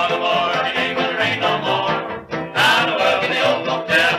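1930s string band of guitar, fiddle, tenor banjo, piano and string bass playing a country song, with a male voice singing over it. The band drops briefly about two seconds in, then comes back in full.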